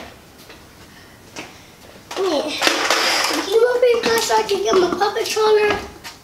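A young child's voice, starting about two seconds in after a quiet stretch, high-pitched and drawn out into a long held sound without clear words.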